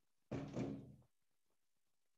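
A single short noise, under a second long, starting about a third of a second in, with a low steady tone running through it, against near silence.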